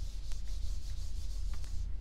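A handheld eraser rubbing across a dry-erase whiteboard, wiping writing off in a steady scrubbing hiss that stops just before the end.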